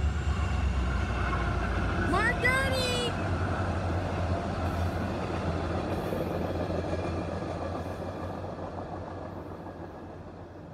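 MARC commuter train passing, its passenger coaches rolling by with a steady low rumble and wheel noise that fades away over the last few seconds as the train recedes.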